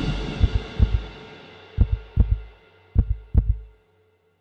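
Heartbeat sound effect: deep, low thumps in lub-dub pairs, coming further apart and fading, over a sustained music tone that dies away.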